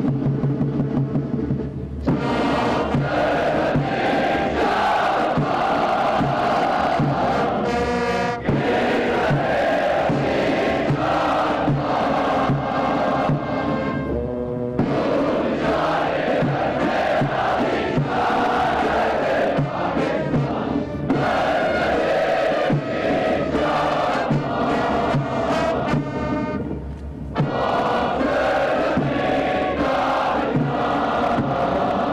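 Military parade music: a band playing while many voices sing together in chorus, over a steady marching drum beat, with a few short breaks.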